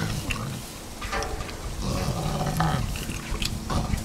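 Chimpanzees vocalizing: a few short, pitched calls in the middle, among scattered clicks and knocks.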